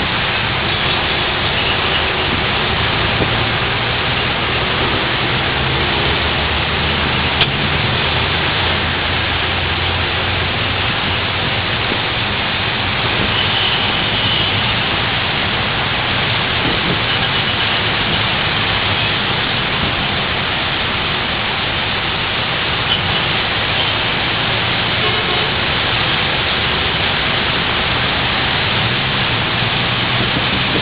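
Heavy rain pouring down in a loud, steady hiss, over the low rumble of traffic driving on a wet road.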